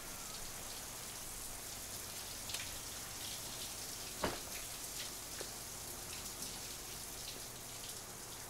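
Steady hiss of running water, with a few faint ticks and a sharper knock about four seconds in.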